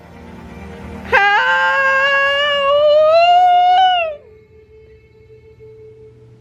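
A woman's long, high-pitched excited squeal, held on one note for about three seconds and ending about four seconds in, over a low background hum.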